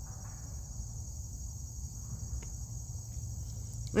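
Crickets trilling steadily in a high, evenly pulsing chorus, with a low rumble underneath.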